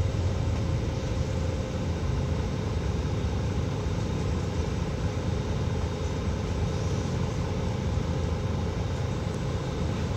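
Steady low rumble of road traffic, with no distinct passes or sudden events.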